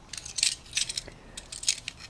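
A handful of light clicks and rattles as a small pepper spray canister is handled in the hand.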